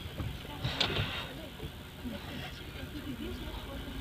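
Low, steady engine and road noise inside the cabin of a moving Toyota car, with faint voices in the background and a couple of soft knocks about a second in.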